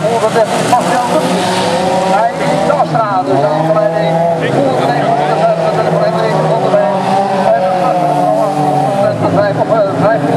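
Several standard-class autocross cars' engines racing at high revs, overlapping, their pitch rising and falling as the drivers accelerate and shift.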